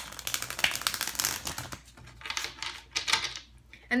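Tarot deck being shuffled by hand: a rapid run of card clicks and flicks in two spells with a short lull about halfway.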